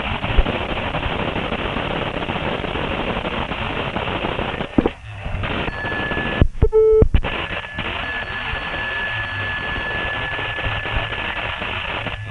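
Continuous mechanical clattering from an office machine, heard over a telephone line. About six and a half seconds in, the clatter drops out briefly for a short call-waiting beep.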